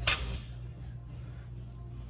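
A loaded barbell clanks once just after the start: a sharp knock with a short metallic ring that dies away within half a second. A low steady hum follows.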